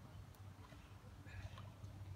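Near silence: faint outdoor background with a low steady hum and a faint brief sound about one and a half seconds in.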